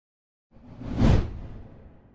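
A single whoosh transition sound effect for an animated outro graphic. It begins about half a second in, swells to a peak near the middle and then trails away.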